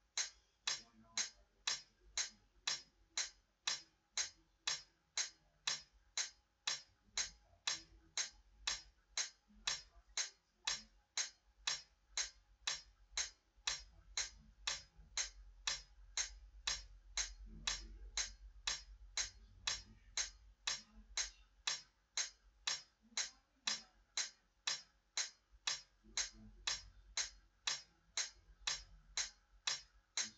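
Metronome clicking steadily, about two sharp ticks a second, keeping the beat for a practice exercise with no instrument playing.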